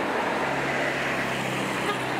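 Street traffic with a box truck passing close by and driving off: a steady engine hum over road and tyre noise.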